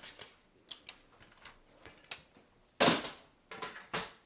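Cardstock pieces and a paper trimmer being handled on a craft table: light clicks and paper rustles, with one louder, brief sliding rustle about three seconds in and a few more clicks near the end.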